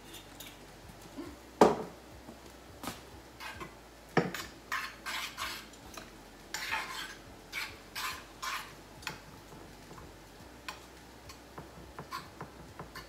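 A spoon scraping and clinking against a stoneware casserole dish as ground beef is stirred together with wine and tomato paste, in short strokes about two a second. A couple of sharp knocks come in the first few seconds, the first being the loudest sound.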